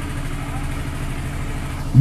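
A steady low mechanical hum, engine-like, holding an even pitch without change.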